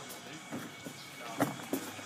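Two short, sharp thuds about a third of a second apart near the end, over faint talk.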